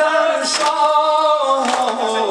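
A man singing a manqabat, a devotional praise song, solo into a microphone, holding long, slowly bending melodic notes.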